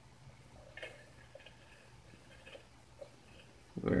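Faint handling sounds, a few soft clicks and taps as a smoke-detector ion chamber is moved into a metal can, over a low steady hum.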